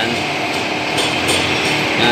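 Steady machine-shop background noise: an even, unbroken hiss with no separate knocks or strokes.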